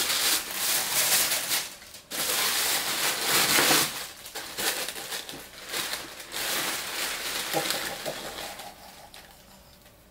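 Tissue paper rustling and crinkling as it is pulled back and unfolded by hand, in bursts with short breaks, fading near the end.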